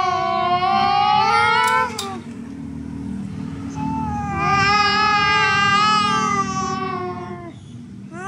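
A baby babbling in long, high-pitched squealing calls: two drawn-out calls, one in the first two seconds and another from about four and a half to seven and a half seconds in, each holding a fairly steady pitch.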